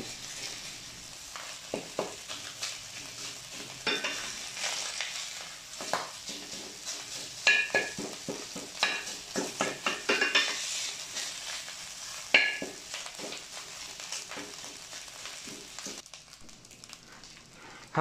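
Rice sizzling as it fries in a stainless steel pot, stirred with a stainless steel spatula that scrapes and clicks against the pot, with a few sharp ringing scrapes. The sizzle thins out near the end.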